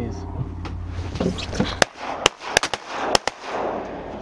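A rapid volley of about seven shotgun blasts from several hunters firing at incoming teal, packed into about a second and a half starting near the middle.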